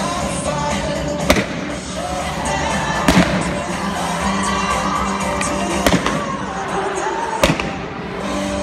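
Four sharp bangs, spaced a second and a half to three seconds apart, over loud background music, as balloon targets are set off with bursts of sparks and smoke.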